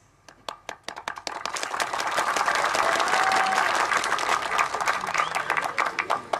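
Audience applauding: a few scattered claps that build within about two seconds into steady applause, thinning near the end.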